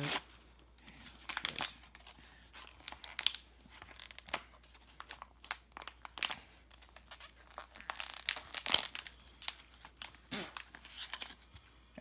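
Paper toy packaging being torn open and crinkled by hand, in irregular short rips and crackles, loudest a little past the middle.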